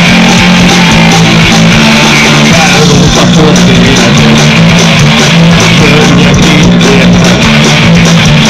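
Live rock band playing an instrumental passage: electric guitars, bass guitar and drum kit, loud throughout.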